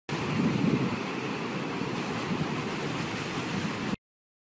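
A steady rushing noise with no tone or voice in it, a little louder in the first second, that starts suddenly and cuts off abruptly.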